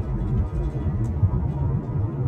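Low, uneven road rumble of a car driving, heard from inside the cabin, with music playing underneath.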